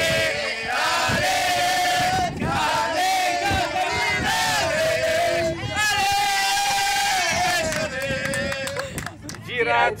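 A crowd of men and women chanting and shouting together in unison, holding each note for about a second, with a brief dip near the end.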